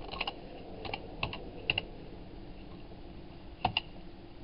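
Computer input clicks: five short groups of two or three quick clicks each, four within the first two seconds and one near the end.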